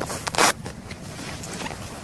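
A brief rustling noise about half a second in, over a faint steady hiss.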